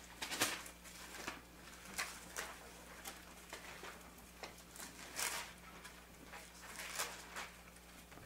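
Soft paper rustles and page flicks at irregular moments as Bible pages are leafed through to find a passage, over a faint steady electrical hum.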